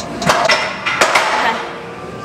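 Loaded steel barbell racked on a squat rack's hooks after a heavy set: a few sharp metal knocks and clanks in the first second and a half, then fading.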